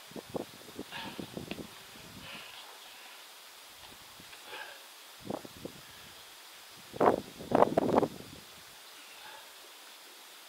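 Juniper foliage rustling and crackling as hands grip and work through the branches. It comes in irregular bursts: one near the start, a short one about five seconds in, and the loudest, about a second long, at around seven seconds.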